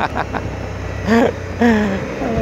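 Motorcycle engine running at a steady cruise, a low hum under wind hiss on the helmet camera's microphone. The rider makes two short voiced sounds, about a second in and near the end.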